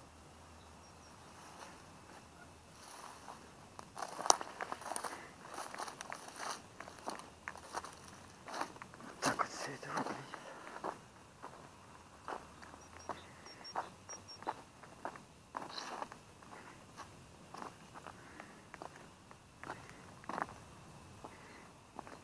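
Footsteps crunching through dry grass and broken brick rubble, an uneven run of crunches that starts about three seconds in.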